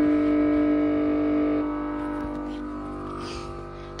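A steady electrical or mechanical hum with several pitched overtones from unidentified equipment in an abandoned car wash bay. It drops in level about one and a half seconds in and fades lower after that.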